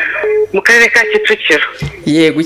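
A voice speaking over a phone line, heard through a mobile phone's speaker held up to a microphone, unclear and broken.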